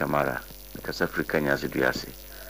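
A person speaking over a steady low electrical hum.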